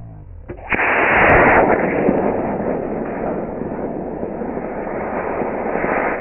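Estes A10-3 model rocket motor igniting with a click and a sudden loud rush of noise a little under a second in, strongest for about a second as the saucer lifts off. The noise then settles into a steady rushing hiss.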